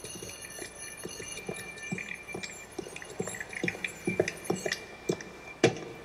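Soundtrack of a cartoon clip: a shopping cart being pushed, with irregular light clicks and clatters and a louder knock near the end, over faint steady high-pitched tones.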